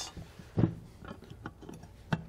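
Light clicks and knocks of a security camera's mounting base being handled and set on a table, with one louder knock about half a second in.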